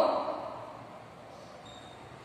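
A woman's drawn-out voice trailing off in the first half second, then quiet room tone. Near the end there is a faint, brief high squeak from a marker writing on a whiteboard.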